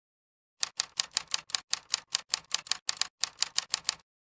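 A fast, even run of sharp clicks, about five a second, starting about half a second in, much like keys being typed.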